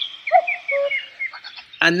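A common cuckoo's two-note 'cuck-oo' call, the first note higher than the second, played back through a tablet speaker, with a quick run of high, short chirps from a smaller bird.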